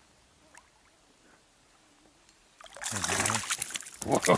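Near silence, then about two and a half seconds in a hooked ide splashing hard at the water's surface right beside the boat, a loud run of sharp splashes with a man's shout over it.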